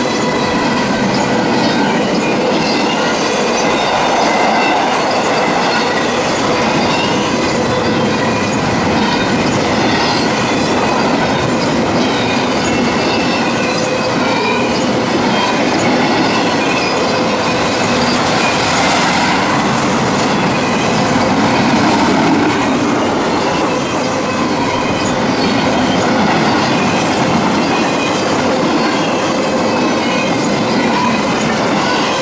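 CSX intermodal freight train of double-stack container and trailer cars rolling past: a steady clatter and rumble of wheels over the rails, with a steady high-pitched wheel squeal ringing over it that gets a little brighter a bit past halfway.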